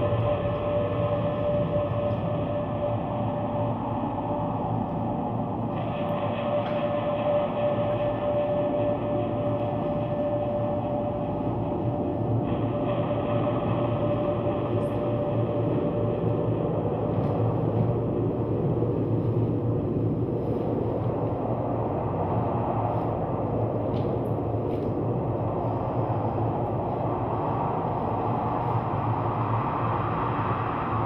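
Steady rumbling drone in the dance piece's soundtrack, with a held mid-pitched tone over it that fades out about halfway through.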